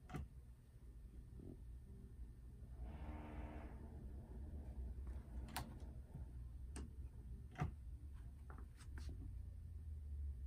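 A few sharp, light clicks and taps, spaced irregularly, as a tennis racket is handled in a racket diagnostic machine while its swing weight is measured, with a short soft rustle about three seconds in.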